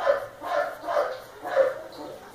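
A dog barking repeatedly, four short barks about two a second.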